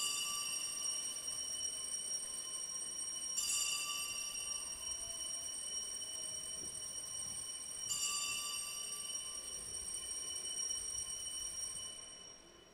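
Altar bells rung three times, about four seconds apart, each ring held and slowly dying away: the signal for the elevation of the host at the consecration.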